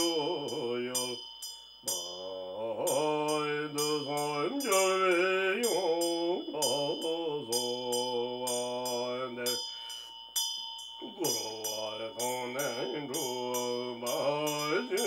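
A man chanting a Tibetan Buddhist devotional song in a low voice, in long melodic phrases with short breaths between them, while a Tibetan ritual hand bell (drilbu) rings continuously with quick, regular clapper strikes.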